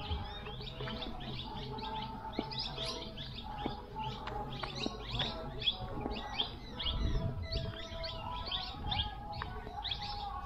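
Many small birds chirping continuously, several short chirps a second, with a brief low rumble about seven seconds in.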